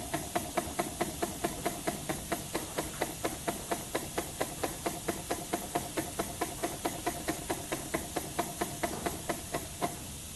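Small model steam engine built from a KLG spark plug, running on compressed air: a sharp exhaust puff with each stroke, about four to five a second, over a steady hiss of air. The beat stops near the end.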